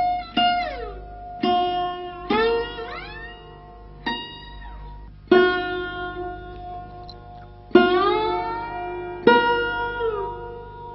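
Sarod played solo, single notes plucked with a coconut-shell java plectrum, about eight in all. Each rings and dies away, and several slide down or up in pitch as the fingernail glides along the fretless metal fingerboard, giving the voice-like bends.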